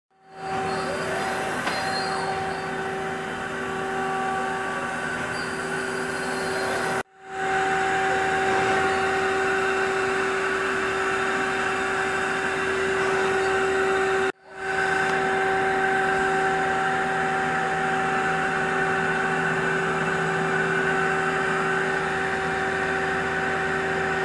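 Mazak QT Nexus 200M CNC lathe powered up and running: a steady machine hum with a constant mid-pitched tone, broken twice by brief cuts to silence about 7 and 14 seconds in.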